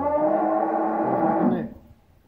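A cow mooing once while being palpated: one long, loud call that stops about a second and a half in.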